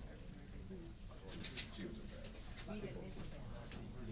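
Indistinct murmur of people talking quietly in a room, with a brief cluster of clicks about a second and a half in.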